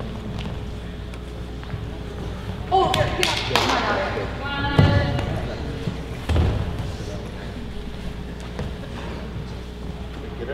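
Unclear shouting from coaches or spectators in a gym, loudest between about three and five seconds in. Two dull thuds come about five and six and a half seconds in, over a steady room hum.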